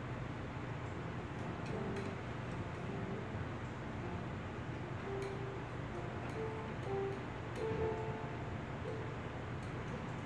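Mini Grand software piano played from a MIDI keyboard: sparse short single notes over a looping drum beat.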